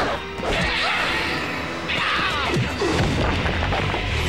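Cartoon fight sound effects: crashing and whacking hits over action music, with a long noisy crash through the middle.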